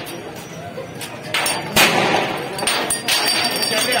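Several sharp bangs from tear gas shells being fired. The loudest comes just under two seconds in, and the others about a second in and near the end.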